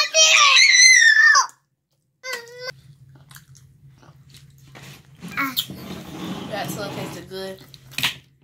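A child's loud, high-pitched wordless voice wavers for about a second and a half and cuts off. After a brief second call, quieter eating and utensil noises run over a steady low hum.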